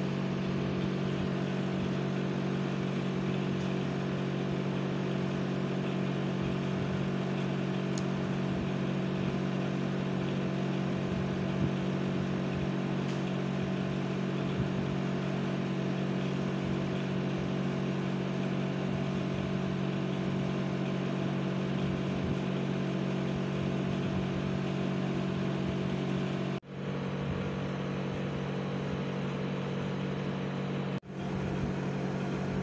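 Steady mechanical hum with a strong low drone and several fainter steady tones above it, unchanging in level. It breaks off for an instant near the end.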